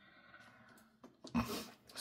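Green plastic craft storage box being shut and moved on a cutting mat: a soft click, then a brief knock and scrape in the second half.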